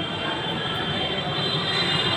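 Steady background noise, machine-like, with a faint high-pitched whine held throughout.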